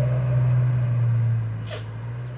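Jeep 'guala' engine running steadily as it climbs away with passengers aboard, a loud low drone that fades about a second and a half in as the jeep pulls off. A brief hiss follows near the end.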